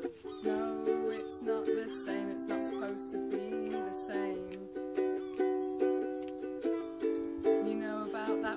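Ukulele strummed in a steady rhythm, playing chords that change every second or so.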